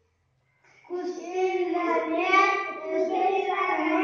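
Young children's voices singing, starting about a second in after a short silence.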